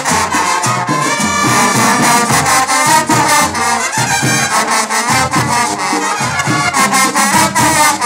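Marching band playing a Latin tune: trumpets, trombones and sousaphone over percussion keeping a steady beat.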